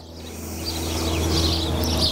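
Birds chirping faintly over a steady low hum and a rushing noise that swells steadily louder.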